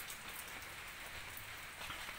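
Faint, steady outdoor background hiss with a light patter of small ticks.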